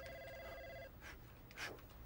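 An electronic desk-telephone ring, one steady multi-tone burst lasting just under a second, then it cuts off. A soft sound repeats about twice a second underneath.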